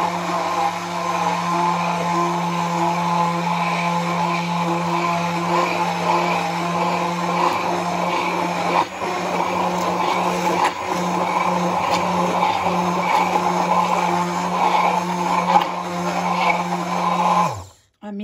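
Hand-held immersion blender running steadily in a tall plastic beaker, emulsifying eggs, lemon and sunflower oil into thick mayonnaise, with two brief dips in level midway. The motor winds down and stops near the end.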